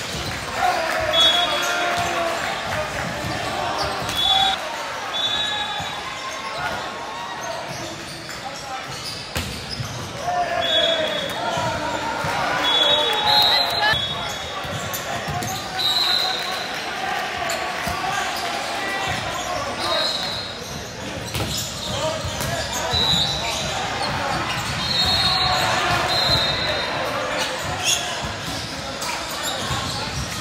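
Volleyball play in a large gym hall: the ball being struck and bouncing, sneakers squeaking briefly again and again on the hardwood court, and players calling out, all echoing in the hall.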